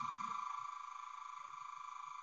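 A steady, high electronic tone with a fast, even pulsing flutter, held without a break.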